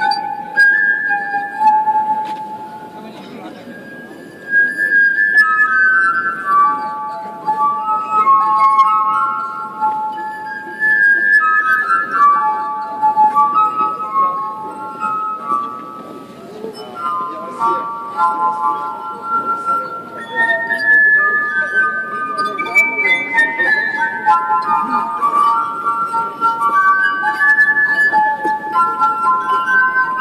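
Glass harp: rows of wine glasses sounded by fingertips rubbing their rims, playing a melody of sustained, overlapping ringing tones, with a crowd talking quietly underneath.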